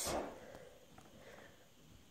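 Near silence: room tone, after a brief faint rush of noise right at the start.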